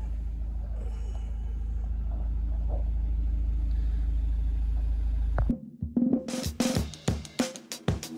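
Van engine running, heard inside the cab as a steady low rumble. It cuts off suddenly about five and a half seconds in, giving way to music with a drum-kit beat.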